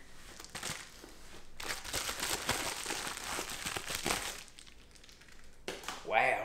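Packaging crinkling and rustling as a new baitcasting reel is unwrapped by hand. It dies down about four and a half seconds in.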